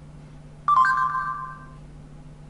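Google voice search chime from a Samsung Galaxy S3's speaker: a short two-note tone about two-thirds of a second in that fades out within about a second. It marks the end of listening as the spoken query is recognised. A faint steady low hum lies underneath.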